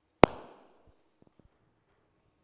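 A handheld microphone bumped once: a loud, sharp thump with a short ringing tail about a quarter second in, followed by a few faint taps.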